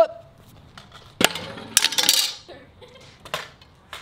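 Metal stunt scooter, its deck centre cut out, clanking and rattling against concrete: a sharp clank about a second in, a longer rattling clatter just before the middle, and two more sharp clanks near the end.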